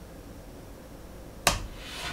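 A single sharp click about one and a half seconds in, the computer mouse clicked to pause the video, over quiet room tone.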